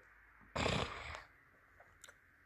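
A short, noisy intake of breath by the narrator, lasting about three quarters of a second and starting about half a second in, with a couple of faint clicks near the end.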